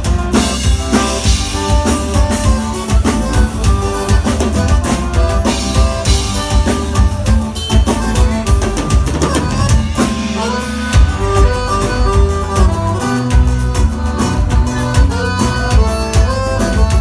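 Live band playing an instrumental passage without vocals: a drum kit keeps a steady beat under an accordion melody, with bass and acoustic guitar.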